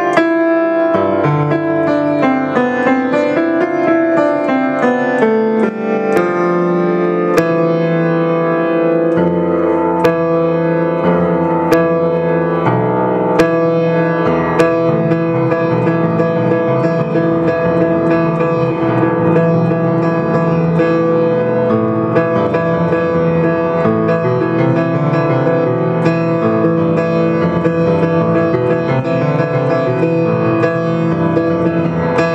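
A 1927 Weber five-foot grand piano played solo, with sustained chords ringing over one another and a bass line that steps down in the first few seconds.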